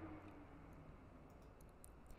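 Near silence with a faint background hum and a few faint computer mouse clicks in the second half.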